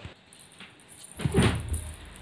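Small metal anklets and bangles jingling lightly as a toddler moves on a bed, with a brief soft vocal sound from the child a little past a second in.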